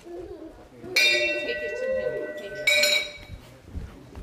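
A bell struck twice, the strikes under two seconds apart, each ringing on with several clear tones, over low chatter from the room.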